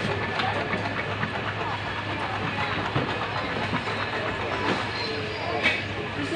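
Food-market background noise: a steady low hum under a wash of general noise, with faint chatter from people around the stalls and occasional small clicks.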